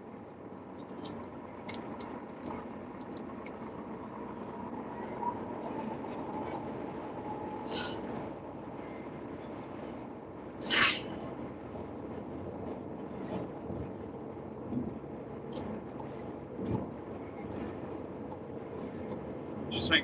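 Steady road and wind noise inside a moving car driving with a window open, with scattered light clicks and one brief sharp noise about eleven seconds in.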